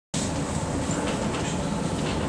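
Steady classroom background noise, a low rumble with a hiss over it.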